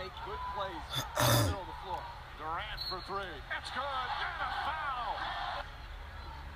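Basketball game audio: sneakers squeaking on a hardwood court, many short squeaks over arena crowd noise. There is a brief loud puff of breathy noise about a second in.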